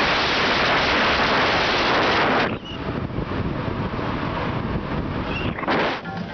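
Loud wind rushing over the microphone of a camera on a fast downhill bicycle ride. It cuts off abruptly about two and a half seconds in, leaving a quieter steady rush, and a short loud gust returns near the end.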